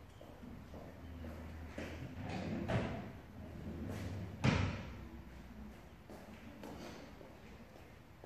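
A few scattered knocks and thumps, the loudest about four and a half seconds in, over a low rumble that fades out about halfway through.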